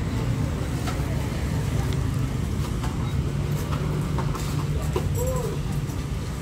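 Busy market background: a steady low rumble of traffic or machinery under distant voices. A few short soft clicks and crinkles come from the plastic sleeves of a menu binder as a page is turned.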